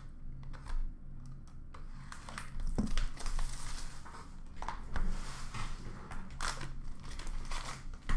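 Hockey card boxes and foil packs being handled and torn open: quiet handling at first, then cardboard tearing and wrapper crinkling from a little over two seconds in, with a couple of sharp knocks.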